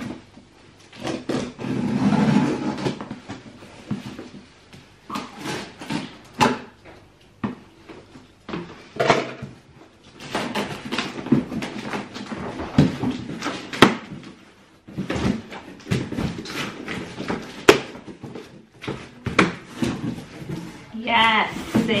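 A cardboard parcel being opened by hand: scissors snipping and slicing through packing tape, tape tearing, and the cardboard flaps and packaging crackling, rustling and knocking in an irregular string of sharp clicks and scrapes.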